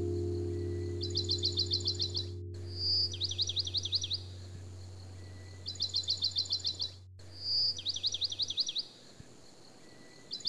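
A songbird repeating one phrase about four times: a short whistle followed by a quick run of sweeping chirps. It sounds over a held music chord that fades out a little before the end.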